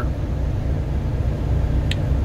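Steady low rumble of an idling engine, with a faint click just before the end.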